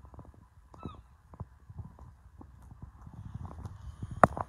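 A short, arching animal call with a mewing quality sounds about a second in, over irregular soft low knocks and thumps.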